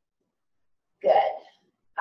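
Dead silence for about a second, then one short vocal sound from a woman, about half a second long.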